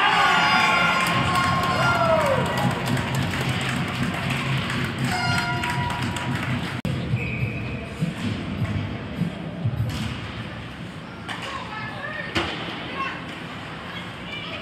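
Ice hockey game heard from the arena stands: spectators shouting and calling out, with scattered sharp clacks and thuds of sticks, puck and boards. The shouting is loudest in the first couple of seconds.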